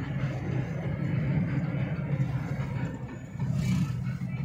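Car driving along a road, heard from inside the cabin: a steady low rumble of engine and tyres.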